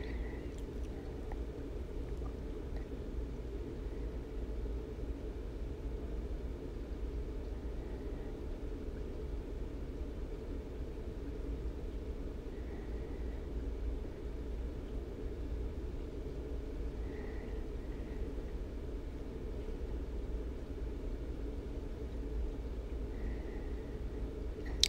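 Steady low room noise, a dull hum and hiss with no distinct events, with a few faint brief high chirps scattered through it.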